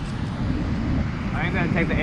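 Steady low rumble of wind on the camera microphone and surf breaking on a shallow reef, with a man starting to speak about one and a half seconds in.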